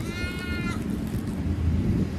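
An animal's call: one short, drawn-out cry lasting well under a second near the start, over a steady low rumble.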